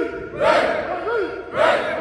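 Marching band members shouting a chant together in unison, each loud group shout rising and falling in pitch and coming about once a second.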